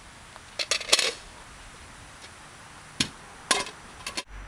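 Cooking pot and its lid clinking as they are handled: a quick cluster of sharp clinks about half a second to a second in, then two more single clinks about three and three and a half seconds in.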